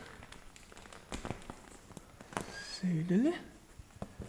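Canvas cab cover being handled and fitted onto a tractor's cab frame: soft rustles and a few light clicks. About three seconds in, a short vocal sound rises in pitch.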